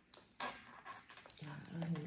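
Ripe durian husk cracking open as it is pried apart by hand: a few sharp cracks, the loudest about half a second in. The fruit is ripe enough to split along its seams at a touch. A voice begins near the end.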